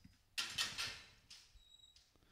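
Steel sale-ring gate being swung open: a short scraping, rattling noise, then a thin squeak near the end.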